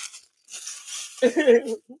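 A short papery rustle, like a foil trading card pack wrapper being torn open, then a man laughing loudly near the end.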